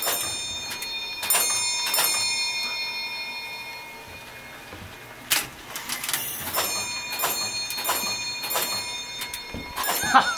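Gamewell fire alarm telegraph repeater running through a cycle. Its clockwork clicks and a bell is struck again and again, each stroke ringing on and fading. Three strokes come in the first two seconds, then a pause of about three seconds, then a quicker run of strokes.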